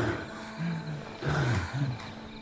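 Deep growl sound effect in three short low-pitched parts, the middle one falling in pitch, over background music.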